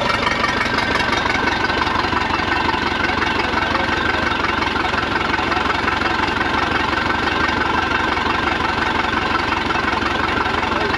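Freshly installed V8 in a Baja sterndrive boat idling steadily, run on its trailer out of the water.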